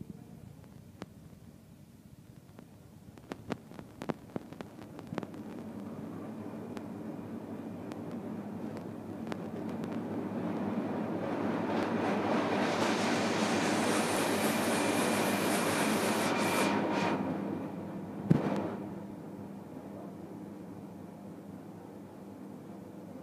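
A machine running with a rushing noise, swelling over several seconds and cutting off sharply, after a few light clicks at the start; a single knock follows the cut-off.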